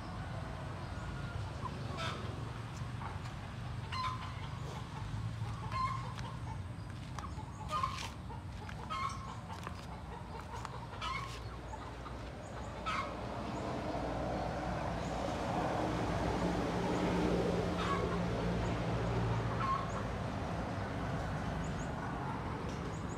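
Domestic chickens clucking: a dozen or so short calls every second or two, over a low steady hum.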